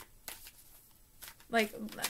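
Tarot deck being shuffled by hand: a few light card snaps and slides, then a woman's voice comes in near the end.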